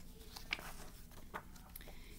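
Faint handling noise of a picture book's paper pages being turned: light rustle with a few soft clicks.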